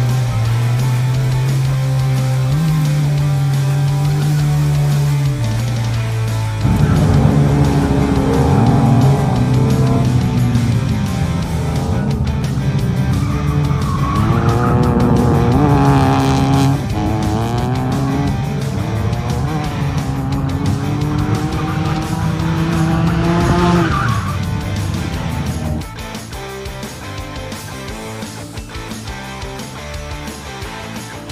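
Mazda RX-7 FC's rotary engine revving up and down hard with tyres squealing as the car drifts, over rock music with guitar. The car comes in about a quarter of the way through and drops out a few seconds before the end, leaving the music.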